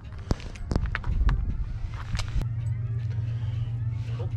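Fishing rod and reel being handled, giving about half a dozen sharp clicks and knocks over the first two and a half seconds, with a low thud about a second in. A steady low rumble follows.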